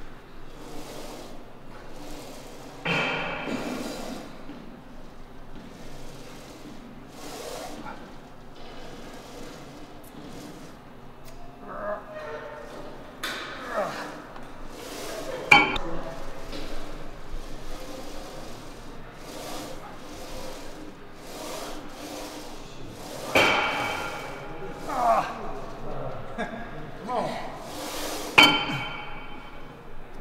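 Assisted dip machine worked through a hard set of triceps dips: the weight stack clinks and knocks as it rides up and down, with one sharp metal clank about halfway through. A man's strained exhalations and grunts come on the hardest reps, several of them in the last few seconds.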